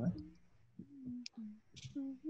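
The end of a spoken "what?", then faint voice sounds over a video call, with one sharp click a little past a second in.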